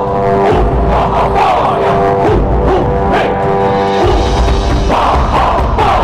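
Buddhist devotional music with chanting voices over a steady held tone. The held tone stops about four seconds in.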